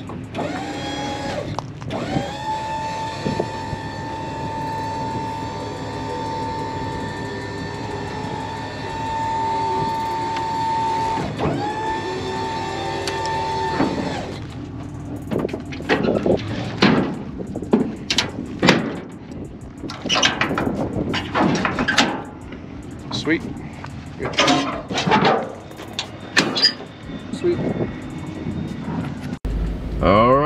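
Electric-hydraulic pump of a pickup dump insert whining steadily as it raises the dump bed, its pitch shifting as it starts, then cutting off about halfway through. After that comes a run of irregular metal clanks and rattles from the open tailgate and its chains.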